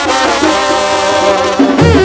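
Mexican banda brass band playing: trumpets and trombones hold a sustained chord, and near the end the low sousaphone bass line comes in strongly.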